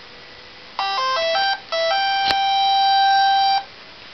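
Electronic startup tune from the Propeller-controlled robot, played with Scribbler 2-style sound code: a quick run of about six short beeping notes, then one long held note lasting about two seconds, with a single click partway through.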